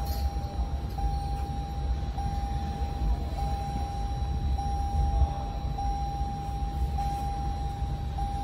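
A steady, high-pitched electronic tone, cut by a brief break about every second, over a low rumble.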